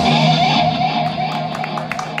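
Live electric guitar ringing out and slowly fading as a rock band ends a song, the drums and cymbals already stopped.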